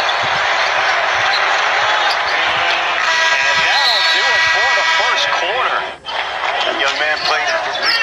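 Basketball arena: crowd noise as the last seconds of the quarter run out, then the end-of-period horn sounds about three seconds in as a steady chord of several tones held for nearly three seconds. After a sudden cut, sneaker squeaks and ball bounces from play on the court.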